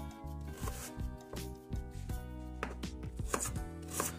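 Kitchen knife chopping an onion on a thin plastic cutting board: a string of uneven taps, a few a second.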